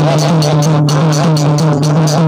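Devotional bhajan accompaniment without singing: a two-headed hand drum and small brass hand cymbals (manjira) keep a quick, even beat, about four cymbal strikes a second. A steady low drone sounds underneath.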